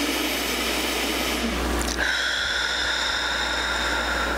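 A steady low hum, with a held high, thin tone coming in about halfway through and sustaining.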